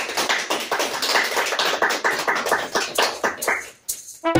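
Audience applause: many hands clapping in a dense, uneven patter that dies away just before the end.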